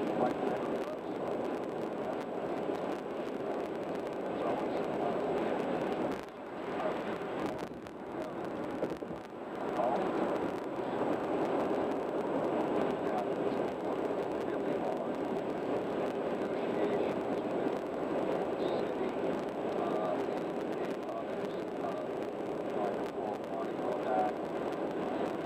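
Road and tyre noise of a vehicle cruising at highway speed, heard from inside the cabin. The noise is steady, dipping for a few seconds about six seconds in before returning.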